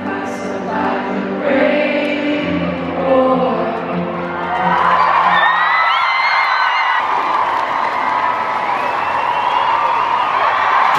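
Live pop concert music with a crowd singing along. About halfway through, the crowd breaks into loud screaming and cheering that carries on to the end.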